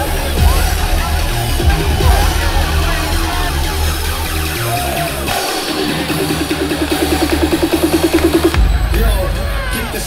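Live dubstep DJ set played loud through a club sound system, heard from within the crowd. About five seconds in the heavy bass drops out for a short build of a quickening, pulsing synth, and the heavy bass comes back in near the end.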